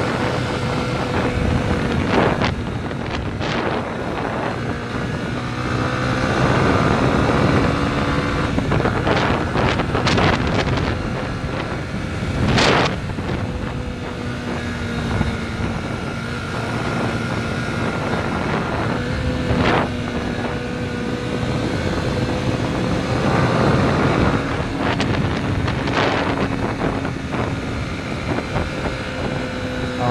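Yamaha 150cc single-cylinder motorcycle engine running at a steady cruise, its pitch rising and falling a little with the throttle. Heavy wind noise on the microphone runs under it, and a few brief sharp noises cut in, the loudest about midway.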